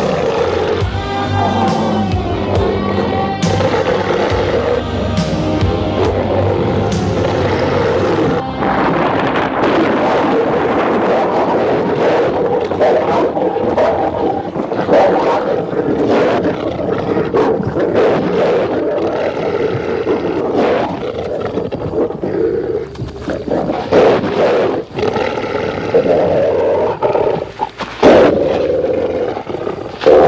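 Horror-film music with a werewolf's growls and roars running through it, and sharp hits coming more often in the second half.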